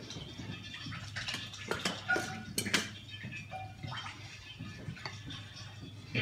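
Dishes and utensils clinking and knocking on a kitchen counter during serving, with a quick run of sharp clinks about two to three seconds in over a low kitchen background.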